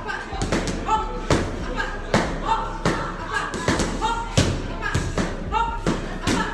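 Boxing gloves and foam pool noodles striking in a quick, uneven run of thuds during a pad drill, two to four strikes a second.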